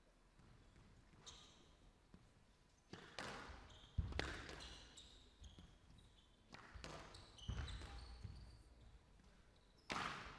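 Squash rally: the ball is struck by rackets and hits the walls of a glass court in a series of sharp, echoing knocks at uneven intervals, with a few brief shoe squeaks on the court floor.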